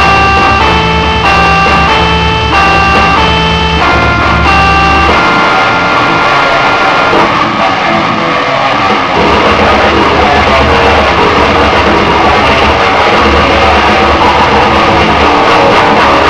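Heavy metal music with electric guitar and drums. For about the first five seconds a line of short, evenly spaced melodic notes runs over a steady low bass, then dense distorted guitars and drums take over.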